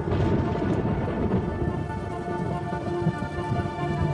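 Thunder rumbling with heavy rain, swelling suddenly at the start, under sustained tones of background music.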